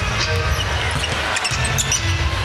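Basketball dribbled on a hardwood court with a few short sneaker squeaks, over steady arena crowd noise and music.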